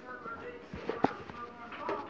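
Faint speech in the background, with a couple of soft clicks about a second in.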